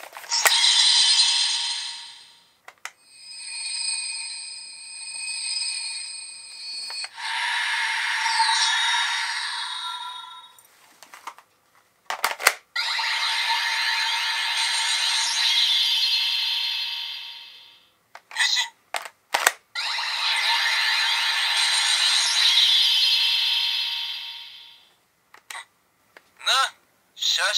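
Electronic sound effects played through the small built-in speaker of a CSM V Buckle toy transformation belt. They come as long shimmering whooshes and a stretch of steady ringing tones, broken by sharp plastic clicks of the buckle and card deck being handled. From about the middle on, it plays Kamen Rider Zolda's transformation sound.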